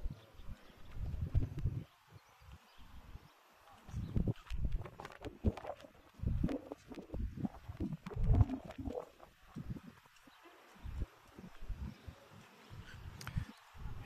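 Wind buffeting the phone's microphone in irregular low gusts that come and go.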